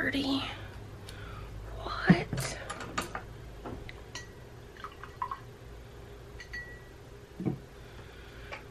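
Soft murmured voice near the start and again about two seconds in, with one sharp click about two seconds in and a few lighter clicks and taps as art supplies are handled on a tabletop.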